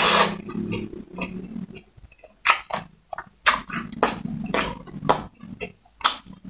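Close-miked eating of crispy fried chicken: a loud crunching bite at the start, then chewing with irregular sharp crunches and wet mouth clicks, with low voiced sounds from the throat mixed into the chewing.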